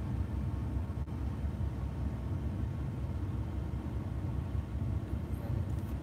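Steady low rumble of a parked car idling, heard from inside the cabin.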